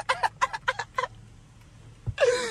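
A man laughing in a quick run of short bursts for about a second, then a low steady car-cabin hum of engine and road noise.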